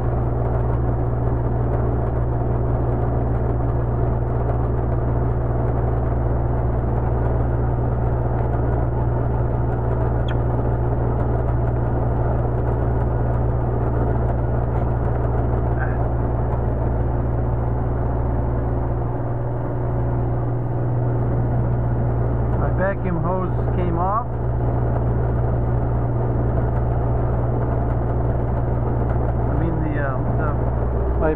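Steady mechanical hum with a strong low drone from the brake-booster test bench's vacuum supply, holding about 20 inches of mercury of vacuum on the activated booster. The low drone dips briefly about two-thirds of the way in.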